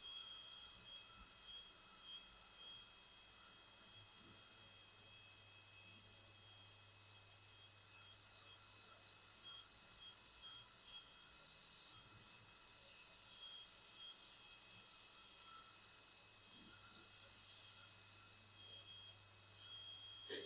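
High-speed dental handpiece running with a steady high-pitched whine, its bur cutting the margin of a front tooth on a dental manikin. Brief louder pulses come at intervals as the bur works the tooth.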